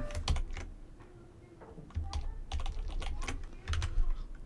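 Computer keyboard keystrokes: a few key presses at the start, a pause, then a quicker run of typing from about two seconds in.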